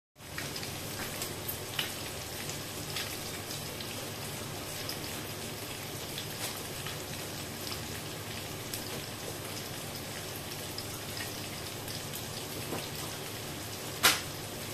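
Boiled eggs, chopped tomatoes, onions and spices sizzling steadily in oil in a frying pan, with scattered small crackles and pops. A sharp click comes at the very end.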